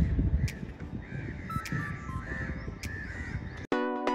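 Crows cawing several times over a low rumble, with music faintly underneath. Near the end the sound cuts out briefly and a loud plucked-string tune begins.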